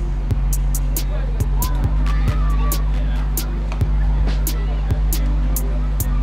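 Background music with a steady deep bass and quick, irregular ticking percussion.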